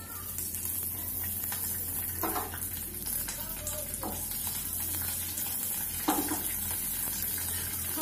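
Curry leaves and dried red chillies sizzling in hot oil in a frying pan, a steady crackling hiss: the tempering for a curd dish.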